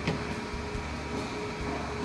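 Steady background room noise with a faint hum, and a single light knock at the very start as a corded in-line GFCI unit is handled on the table.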